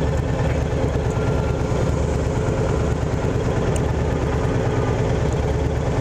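Honda VTX 1300R's V-twin engine idling steadily at a standstill, its exhaust pulses beating evenly.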